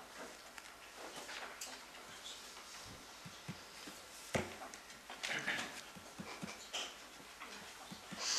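Quiet room tone of a meeting table: faint scattered clicks, taps and rustling from handling tablets and papers, with one sharp knock about four seconds in, the loudest sound, picked up by a desk microphone.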